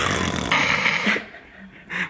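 Breathy, wheezing laughter that fades out about a second in, followed by quieter breaths.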